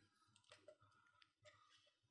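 Near silence with a few faint clicks and rustles from a folded tissue-paper question slip being unwrapped by hand.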